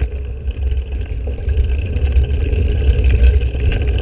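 Riding noise picked up by a bicycle-mounted action camera: heavy wind rumble buffeting the microphone, with some road noise under it. It grows somewhat louder after the first second or so.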